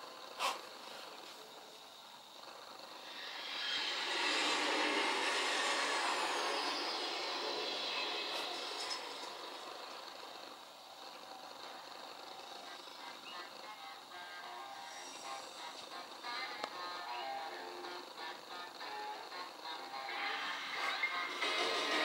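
Music and sound effects from a television programme playing through the TV's speakers, swelling louder about three seconds in and easing off after about eight seconds.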